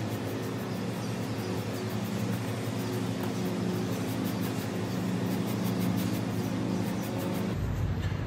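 Steady mechanical hum, several constant low tones, from an outdoor air-conditioning condenser unit running. Over it, faint rustling of cloth being rubbed against a tabletop.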